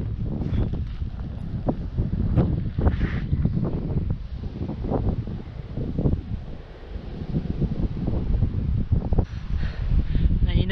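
Wind buffeting the camera microphone in gusts, a low rumble that swells and fades.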